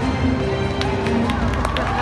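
A live orchestra holds sustained notes in an arena over crowd noise, with scattered claps starting about a second in as the audience begins to applaud.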